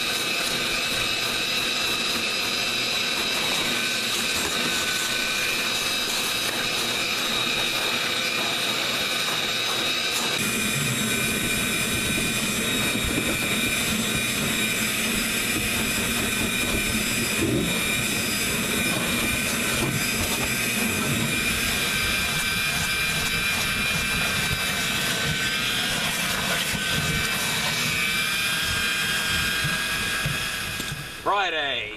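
Vacuum cleaner motor running steadily with a high whine while cleaning a pickup's carpet and door sill. About ten seconds in the sound shifts and gains more low rumble.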